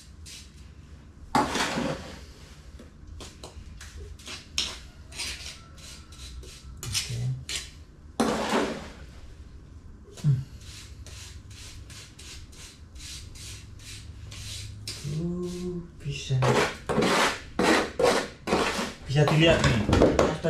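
Scraping and tapping of a small makeshift metal scraper in a plastic basin of sand-cement mortar: a run of short scrapes and clicks, with longer scrapes about a second and a half in and about eight seconds in.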